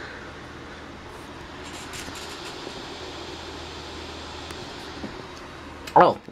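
Steady, even background noise with no distinct event, like room tone or a running fan. A sharp bump right at the end.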